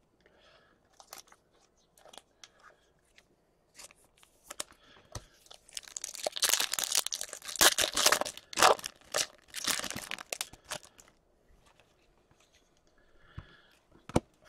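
A plastic hockey-card pack wrapper being torn open and crinkled by hand. A few light handling clicks come first, then a dense burst of crinkling and tearing in the middle, which stops a few seconds before the end.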